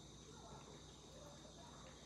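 Near silence: room tone with a faint, steady high-pitched whine and a low hum.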